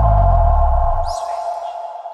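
TV channel logo sting: a sudden electronic hit with a deep bass that stops about a second in, and a held ringing tone that slowly fades away, with a faint falling whoosh about a second in.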